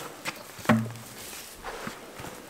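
Footsteps and a plastic bucket being handled: light scuffs and knocks, with one sharper knock a little under a second in, followed by a brief low hum.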